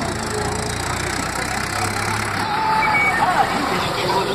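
Motor vehicle engines running low and steady in a busy street as the motorcycle moves off and a tractor passes close by, with voices in the background.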